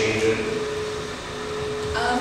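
Steady room hum from ventilation or air conditioning, with one constant tone held throughout. A trace of voice is heard at the very start.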